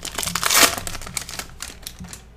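Foil wrapper of a Sage High Series football card pack being torn open and crinkled by hand, loudest about half a second in, then thinning to a few faint crackles.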